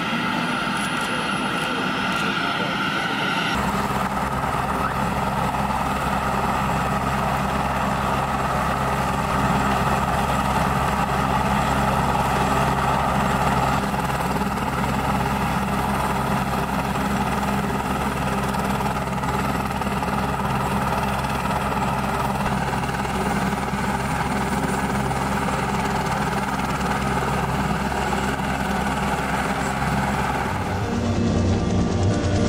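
A helicopter's engine and rotor running steadily, a constant low drone that comes in about three and a half seconds in and holds without change.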